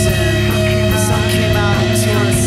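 Post-hardcore rock band recording: electric guitar and bass holding steady sustained notes, with drums and short sliding guitar figures over them.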